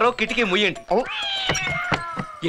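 A long, high-pitched, drawn-out cry with a cat-like timbre, starting about a second in and sliding slowly down in pitch for just over a second, after a short burst of speech.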